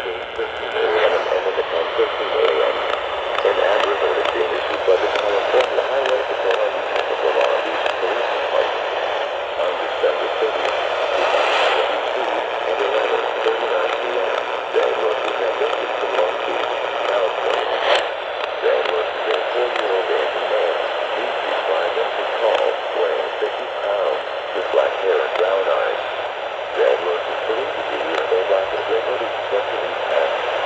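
A voice reading an Emergency Alert System AMBER Alert message through the small speaker of a Midland portable AM radio tuned to AM 640. The sound is thin and muffled, with the narrow, static-laden sound of AM broadcast reception.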